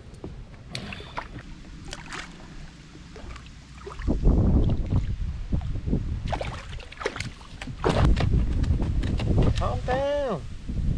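Landing net being handled and water splashing as a thin-lipped mullet is netted beside a kayak, with scattered knocks and clicks. About four seconds in it gets suddenly louder, with a low rumble of wind on the microphone.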